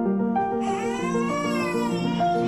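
A newborn baby crying: one long cry that rises in pitch and falls away, starting about half a second in, over background music.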